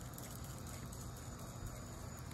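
Faint outdoor background with a steady drone of crickets and other insects over a low rumble.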